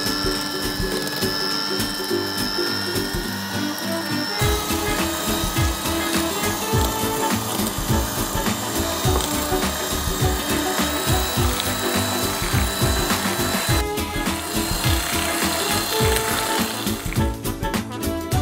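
Electric hand mixer running steadily, its beaters whipping cream cheese batter as the cream and gelatin mixture is beaten in. The sound changes about four seconds in.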